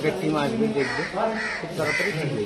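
Indistinct voices talking outdoors, with harsh bird calls among them.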